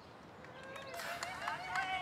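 Faint voices of several people calling out from a distance, growing from near quiet, with one long held call near the end.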